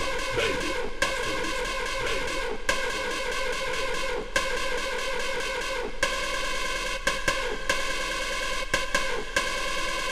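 Electronic dance music from a club DJ set: a held chord of many notes that breaks off and restarts several times, with a few short sharp hits.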